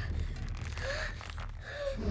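Two short gasping breaths, about a second apart, over a low steady drone.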